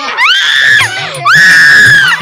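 Two long, high-pitched screams from riders on a spinning playground ride, each rising in pitch and then held, the second louder.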